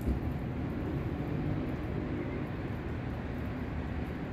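Steady low rumble of city traffic, with the call to prayer (azan) from mosque loudspeakers faint and distant over it.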